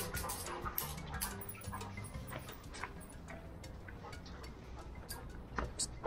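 Golden retrievers' claws clicking on a tiled floor as the dogs hurry along on leash: scattered quick clicks, thick at first and thinning out about halfway through.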